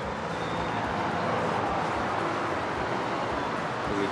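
Steady road traffic noise from the street below, a constant rushing hum, kind of loud.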